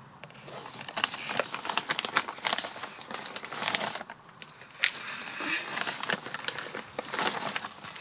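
Loose, dry peat being filled and crumbled by hand into a plastic plant pot: an irregular crackling and rustling, with a short pause about halfway through.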